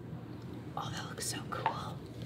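Soft whispering voices, starting a little under a second in, over quiet room tone.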